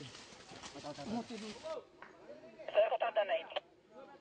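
Men shouting in a chaotic commotion. A noisy haze runs under the voices for the first couple of seconds, then one loud shout comes about three seconds in.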